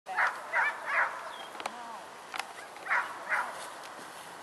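Short harsh animal calls, three in quick succession and then two more near the end, with small birds chirping behind them.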